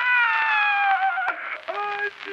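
A high-pitched call within an electronic track, one long note that glides slowly downward for over a second and ends in a sharp click, followed by a shorter call.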